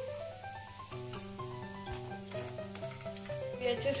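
Background music, under a spatula stirring and scraping spiced potato-and-paneer samosa filling in a non-stick frying pan, with a light sizzle from the hot pan.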